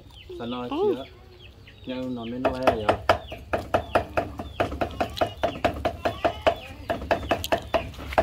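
Steel cleaver chopping raw meat on a wooden chopping block, rapid even strokes at about four a second, starting about two and a half seconds in, as the meat is minced.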